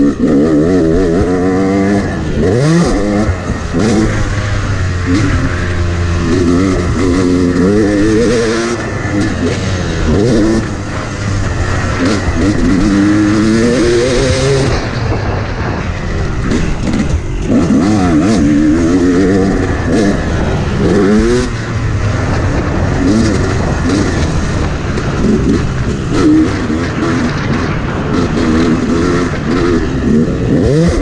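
Two-stroke dirt bike engine under hard riding, revving up and falling back again and again as the throttle is opened and shut on a motocross track.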